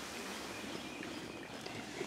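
Faint, steady outdoor background noise with no distinct events.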